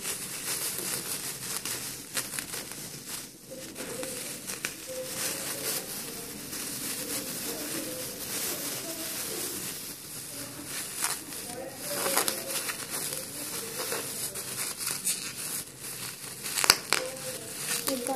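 Blue cellophane crinkling and rustling as it is handled and knotted onto an elastic garter, with a run of sharp crackles, the loudest about 12 s and 17 s in.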